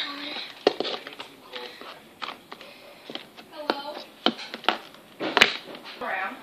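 Several sharp taps and knocks from hands and a plastic lid working slime on a board, the loudest about five and a half seconds in, with quiet, indistinct child's speech between them.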